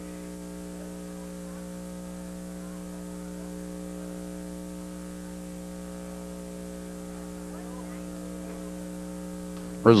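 Steady electrical mains hum: a low hum with several steady higher tones above it, unchanging throughout. A man's voice cuts in right at the end.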